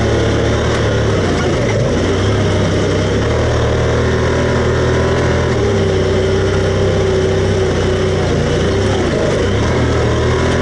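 Side-by-side UTV engine running steadily while driving along a dirt trail. The engine note shifts a few times, about two seconds in, around six seconds and again near the end, as the throttle changes.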